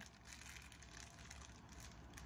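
Faint crinkling of a clear plastic snack wrapper being pulled open by hand.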